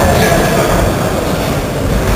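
Steady din of a boxing hall crowd: a mass of voices and shouting over a heavy low rumble.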